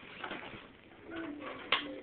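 A baby making short cooing sounds, with a sharp tap near the end.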